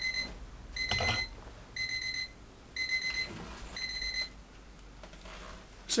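Electronic alarm beeping: a steady high-pitched beep about once a second, each lasting about half a second, five times, stopping a little after four seconds in.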